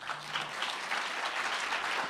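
Audience applauding, building over the first half second and then holding steady.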